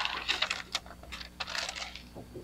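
Bible pages being leafed through at a lectern: a quick run of short, crisp papery rustles as he looks for his place in Matthew 19.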